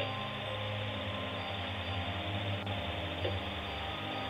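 A steady low hum with an even hiss underneath, and no speech.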